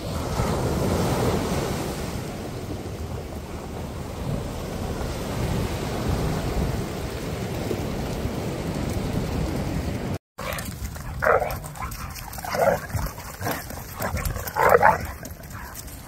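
Surf breaking and washing up a sandy beach, a steady rushing. After a cut about ten seconds in, a few short dog barks and whines as dogs play.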